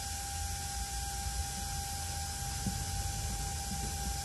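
Room tone: a steady low hum and hiss with a thin constant tone running under it.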